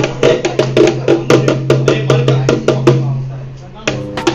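A hand-held drum struck with a stick in a quick, steady rhythm, about four strokes a second, which stops about three seconds in.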